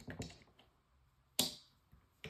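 Light clicks of a hand tool on the fuel bowl screws of an EFI throttle body, a few close together near the start, then one sharp, louder click about one and a half seconds in.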